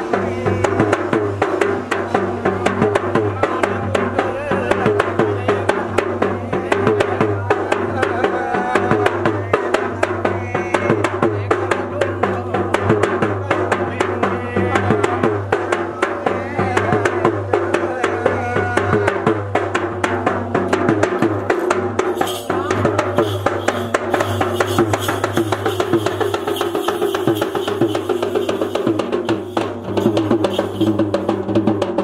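Traditional Sri Lankan ritual drumming, a fast, steady, unbroken beat, with a wavering melody line running over it.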